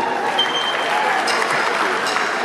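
Large concert audience applauding steadily, the clapping rising as the spoken song introduction ends.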